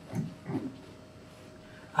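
A man's brief, low chuckles: two short snorting laughs in the first half second or so, then a quiet pause.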